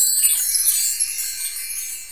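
A high, glittering cluster of chime tones, a sparkle sound effect: loudest in the first second, then fading away near the end.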